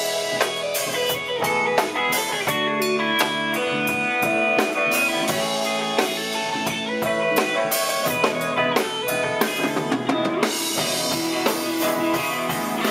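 Live rock band playing an instrumental passage with no vocals: a drum kit with cymbals beating steadily under electric guitars, one of them a Telecaster-style guitar.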